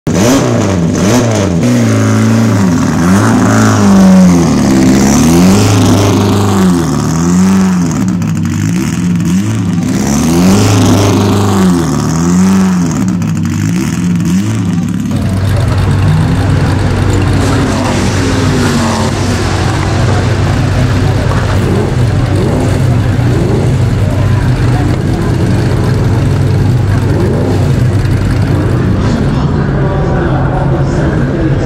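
Racing car engine revved up and down over and over, each rise and fall lasting about two seconds. About halfway through this gives way to a steady, dense engine drone.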